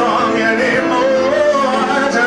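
Man singing live into a microphone with piano accompaniment, the voice carrying a wavering melody over held chords.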